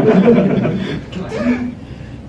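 A man chuckling, loudest in the first second and trailing off.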